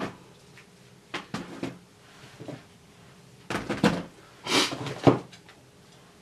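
Cameras being packed back into a box by hand: a few short knocks about a second in, then a louder run of clunks and a rustle about three and a half to five seconds in.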